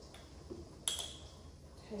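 A single sharp clink with a short high ring just under a second in, as a hard kitchen item is knocked or set down, with a softer knock shortly before it. Low steady room hum underneath.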